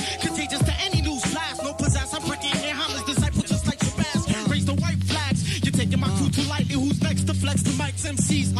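Hip hop beat with a voice rapping over it; a heavy, steady bass line comes in about halfway through.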